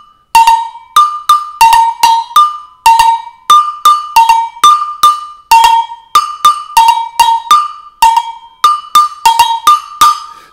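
Two-tone agogo bell struck with a wooden stick in a steady, repeating rhythm of about three strokes a second, moving between the higher and the lower bell, each stroke ringing briefly.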